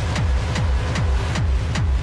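Hard techno playing: a fast, steady kick drum, each kick dropping in pitch, with crisp hi-hat hits on top.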